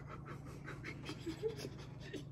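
A man laughing almost without voice: quick breathy puffs of air, several a second, over a faint steady hum.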